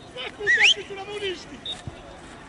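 Players' raised voices calling out on a football pitch, with a brief high whistle that rises in pitch about half a second in, the loudest sound here.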